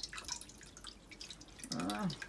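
Water dripping from the door of a leaking front-loading washing machine into a metal pot held beneath it, in small irregular drips. A brief voice sounds near the end.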